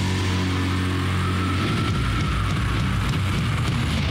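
Slow, heavily distorted doom metal: low guitar and bass chords held for a second or more at a time under a thick wash of distortion, changing note about one and a half seconds in, with a faint high guitar tone swelling and fading above.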